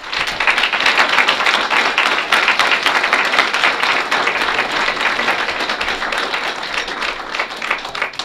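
Audience applauding: many people clapping at once, starting abruptly and thinning out near the end.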